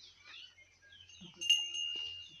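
A small metal bell, most likely on a cow's neck, is struck once about a second and a half in and rings on, fading over about a second.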